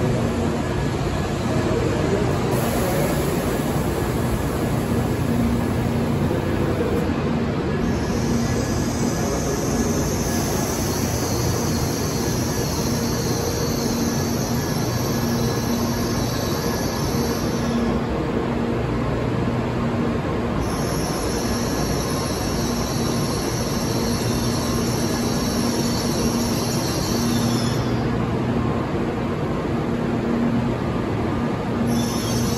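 Doctor Yellow 923-series Shinkansen inspection train rolling slowly along a station platform, with continuous running noise. A high-pitched squeal from the running gear comes in for two long stretches, from about a quarter of the way in to past the middle and again later, then stops near the end.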